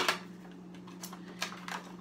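A few light, separate clicks of a plastic blister pack on a toy card being handled and flexed as it is opened, over a steady low hum.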